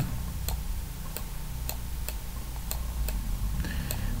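Regular ticking, about two ticks a second, over a steady low hum.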